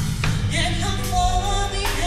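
Live gospel band music: a woman sings the lead into a microphone over a drum kit, electric bass and electric guitar, with drum hits marking the beat.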